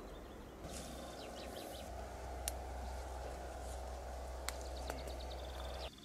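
Faint outdoor ambience: birds chirping in short repeated phrases over a low steady rumble, with two sharp clicks about two seconds apart.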